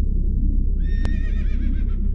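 A horse whinnying once, starting about a second in with a wavering, falling pitch, over a low rumbling music bed, with a sharp click as it begins.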